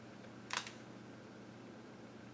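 A brief crisp rustle of a stiff, painted art-journal page being handled and settled about half a second in, over a faint steady low hum.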